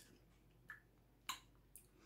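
Faint wet mouth clicks and lip smacks of someone tasting a spoonful of salad dressing: three soft clicks over a quiet room, the loudest a little past the middle.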